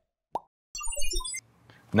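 Intro-animation sound effect: a single plop, then a quick run of short electronic blips stepping down in pitch over a low rumble, lasting under a second.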